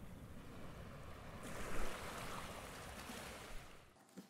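Sea water rushing and washing over a low rumble. It swells brighter about one and a half seconds in, then cuts off suddenly just before the end.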